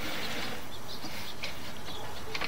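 Steady background hiss, even in level, with a few faint short ticks about one and a half seconds in; no distinct event.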